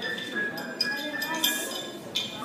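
Light bell-like chiming tones ringing over a murmur of audience voices in a hall.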